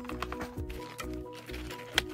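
Background music playing a light melody of short notes, with faint clicks of plastic packaging being handled and a sharp tap near the end.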